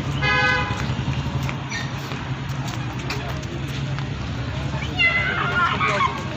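A vehicle horn gives one short toot, about half a second long, right near the start, over a steady low hum. Near the end a child's voice calls out.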